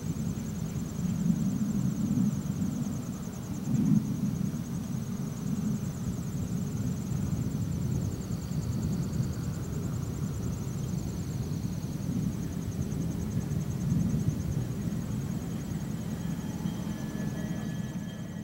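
A lashup of several Grand Trunk diesel-electric road locomotives hauling a long freight train, their engines making a steady low rumble as the train approaches.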